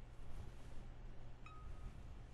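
Faint ink-brush strokes on paper over a low steady hum, with a short single-pitched ding about one and a half seconds in.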